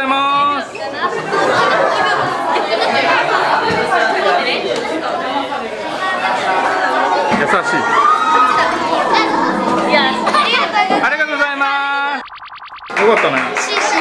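Overlapping chatter of many voices in a busy, echoing indoor hall, with some music underneath. About twelve seconds in, the voices drop away briefly and a short steady buzzing tone sounds.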